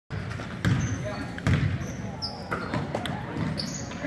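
Basketball bouncing on a hardwood gym floor: two loud thuds in the first second and a half, then softer ones. Voices echo in the large hall.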